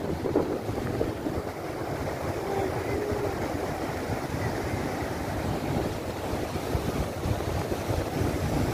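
Steady rushing rumble of a lahar, a cold-lava flood of muddy water and stones flowing down a rocky volcanic river channel, mixed with wind buffeting the microphone.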